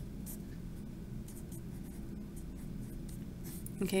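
Hand-writing on lined notebook paper: a string of short, faint scratchy strokes as a line of math is written out, over a steady low hum.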